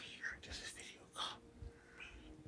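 A person whispering faintly in a few short, breathy bursts.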